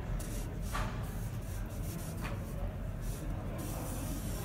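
Felt-tip marker drawing lines on a large paper pad: several short hissing strokes across the paper, with a steady low hum underneath.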